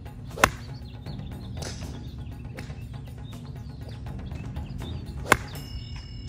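Two crisp golf club strikes on a golf ball, the first about half a second in and the second near the end, each a single sharp crack.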